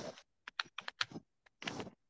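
Typing on a computer keyboard: a quick, uneven run of about eight key clicks, heard over a video call.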